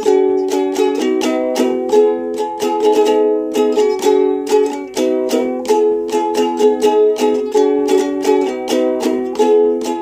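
Soprano ukulele strummed in a steady rhythm, several strums a second, cycling through the C, F, A minor, G chord progression with a chord change every second or two.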